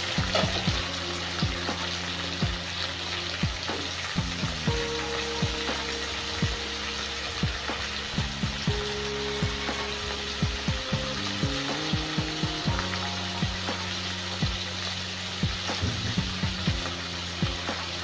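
Tomato wedges frying in hot oil in a pan, a steady sizzle that runs on without a break.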